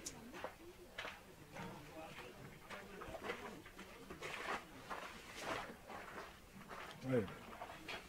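Faint background voices of people talking at a distance, with light scattered clicks. A nearby man says "ouais" near the end.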